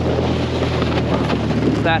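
Snowmobile engine running steadily under way across the ice, with wind noise on the microphone.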